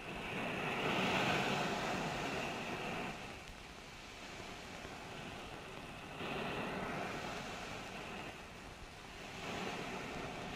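Sea surf washing in on the film soundtrack: a rushing noise with no tone in it, swelling twice, once just after the start and again about six seconds in.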